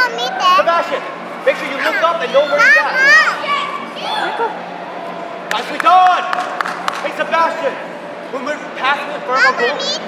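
Children's high-pitched shouts and calls mixed with adult voices, echoing in a large indoor hall. A few sharp knocks come about five and a half seconds in.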